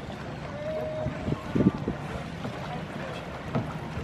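Waterside ambience: a low steady rumble of wind on the microphone over the water, broken by a few short knocks, the loudest about a second and a half in and another near the end, with a brief faint voice early on.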